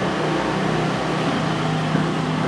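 A steady background hum with a faint low tone, even in level and with no distinct events.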